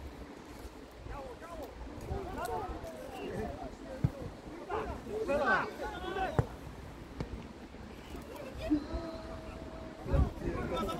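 Footballers shouting and calling to each other across the pitch, with two sharp knocks about two seconds apart and a long held call near the end.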